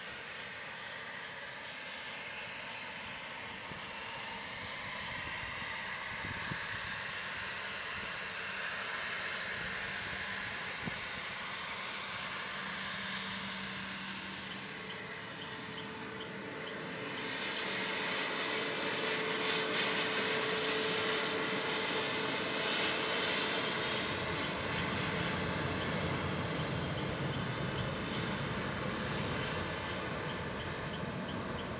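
Bombardier Challenger 604 business jet's twin turbofan engines running, a steady whine and hiss with shifting tones that grows louder about seventeen seconds in.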